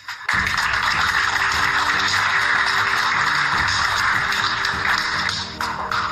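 An audience applauding, starting suddenly and lasting about five seconds, over background music with steady held notes.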